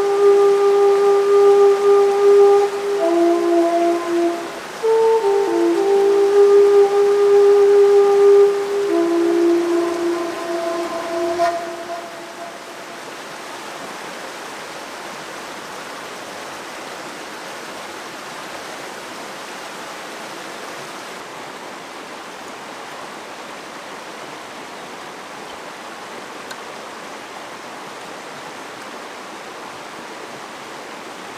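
A slow melody of long, held notes fades out about twelve seconds in. After that comes the steady rushing of a fast-flowing stream.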